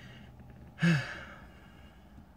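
A man's short sigh about a second in: a breathy exhale with a brief voiced tone falling in pitch.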